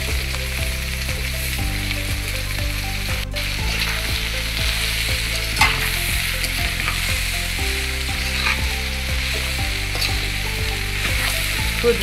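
Rice, beans and vegetables sizzling in a large aluminium pot while a metal spatula stirs them, with occasional sharp scrapes and clicks of the spatula against the pot.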